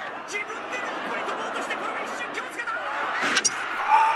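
Arena crowd noise and voices from the wrestling match footage, then a sharp bang about three seconds in as the explosive charges on the barbed-wire ring ropes go off.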